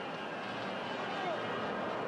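Steady background noise of a football stadium crowd.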